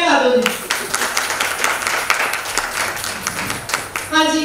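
An audience clapping: a round of applause of about three seconds that begins about half a second in and thins out near the end.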